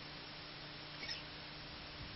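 Steady hiss and low mains hum from a poor camera microphone, broken about a second in by one brief, high squeak.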